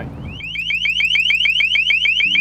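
LRAD 450XL long-range acoustic hailing device sounding its warning tone: a rapid train of rising chirps, about seven or eight a second, starting about half a second in. A steady low hum runs beneath.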